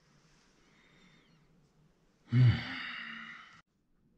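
A man's short "hmm" followed by a long breathy sigh, starting a little past halfway and ending abruptly; only faint room tone before it.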